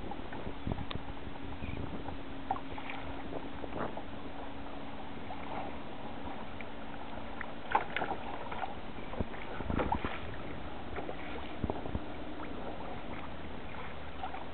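Water splashing and rushing along a plastic kayak's hull as a hooked fish tows the kayak through chop (a 'sleigh ride'), with a few sharper slaps and knocks, the loudest about eight and ten seconds in.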